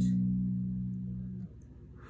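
A single low note on an electric bass guitar, the sixth degree (B) of a D melodic minor scale, rings and slowly fades, then is damped about one and a half seconds in.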